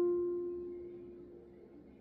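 A single note on a nylon-string classical guitar ringing and slowly fading away.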